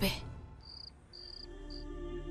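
Crickets chirping: three short, high chirps, while soft, sustained background music fades in underneath.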